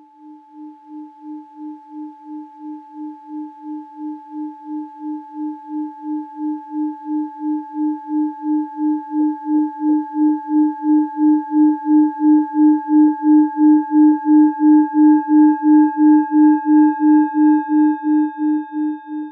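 Singing bowl played by rubbing its rim: a steady low tone with higher overtones, pulsing about three times a second. It swells gradually louder and eases off slightly near the end.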